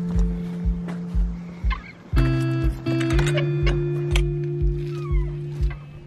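Background music: sustained chords over a steady low beat of about two pulses a second, the chord shifting about three seconds in.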